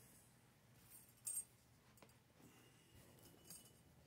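Near silence broken by two short, faint clinks, the louder one about a second in and a weaker one near the end, from a solid art-glass lamp being handled.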